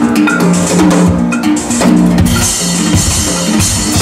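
Drum kit played in a busy percussion solo: rapid drum strikes and bass drum over sustained low pitched notes from a loop. A cymbal wash swells from about halfway through.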